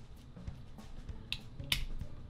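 Plastic parts of a Transformers Starscream action figure clicking as they are folded and pegged into place during transformation, with two sharp clicks in the second half, over quiet background music.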